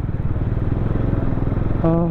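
Bajaj Dominar 400's single-cylinder engine running steadily at low speed in city riding, a fast even pulse heard from the rider's seat. A short vocal sound comes near the end.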